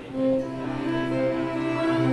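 String quartet playing an instrumental passage, violins and cello bowing long held notes that swell in just after the start.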